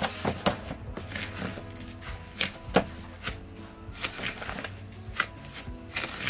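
Background music, over irregular scraping strokes of a wooden spatula stirring dry crumbly flour, sugar and breadcrumbs in a plastic bowl, with one sharper knock about halfway through.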